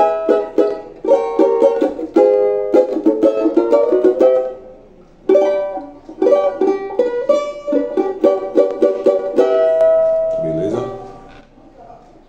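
Oliver Brazilian banjo with a 10-inch pot, strummed in quick chord runs, with a brief break about five seconds in. Near the end a last chord rings on and dies away.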